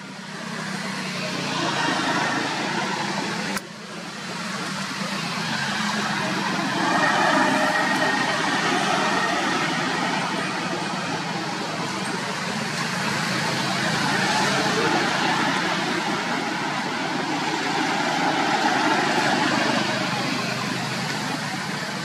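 A steady background of motor-vehicle engine and traffic noise with indistinct voices, briefly dipping at an edit about three and a half seconds in.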